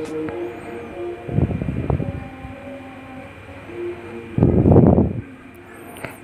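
Background music of sustained held notes, with two louder, noisier surges, one about a second and a half in and one about four and a half seconds in.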